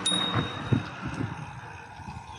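Riding noise from a bicycle on an asphalt cycle lane: a steady hiss of tyres and moving air. Right at the start there is a single bright metallic ring that fades away within about a second.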